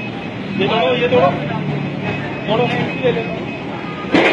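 Forklift engine running steadily, with voices calling out over it twice.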